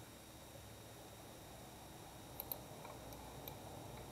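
Quiet room tone with a few faint clicks of a computer mouse, two close together about two and a half seconds in and one more about a second later.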